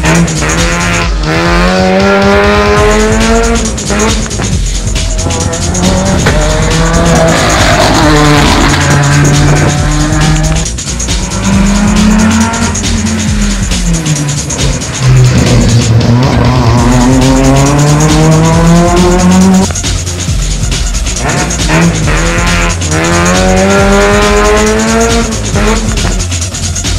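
Rally car engines revving hard, the pitch climbing through each gear, dropping at the shift and climbing again, again and again as the cars accelerate past, with tyres squealing through the bend.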